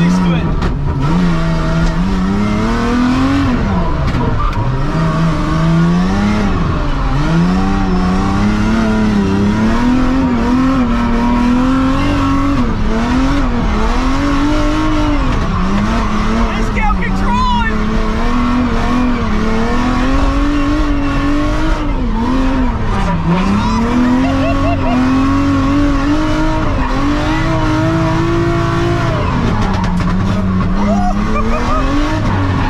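Mazda MX-5 four-cylinder engine revving hard while drifting, heard from inside the cabin, its pitch climbing and dipping over and over as the throttle is worked through the slides, with tyres squealing.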